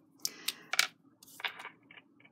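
Handling noises of craft supplies on a cutting mat: a few short plastic clicks and rustles as a sheet of adhesive rhinestones and a pen-like tool are picked up, most of them in the first second.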